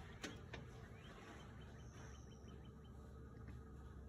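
Near silence: faint ambience with two soft clicks at the very start and a brief run of faint, high, evenly spaced chirps about halfway through.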